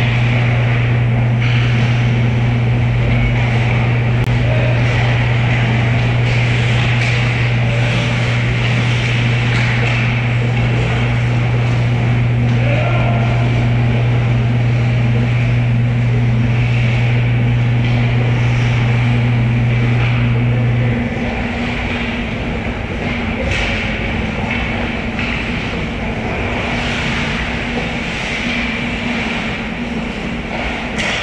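Ice hockey play on an indoor rink: skates scraping and carving on the ice, with a few sharp stick or puck clacks. Underneath runs a steady low mechanical hum whose main tone cuts off about two-thirds of the way through, leaving a fainter hum.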